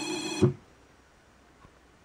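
Dyadic SCN6 electric linear actuator's drive motor whining steadily as it finishes its move, stopping with a short knock about half a second in.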